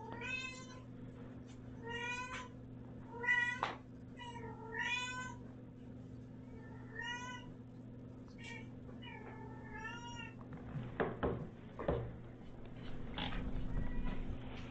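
A kitten meowing in short, high calls, about eight of them over the first ten seconds. Then come a few scuffs and knocks, over a steady low hum.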